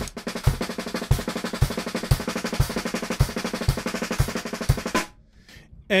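Snare drum played with wooden drumsticks in a fast, continuous rudimental pattern, with a low thump about twice a second underneath. The playing stops about a second before the end.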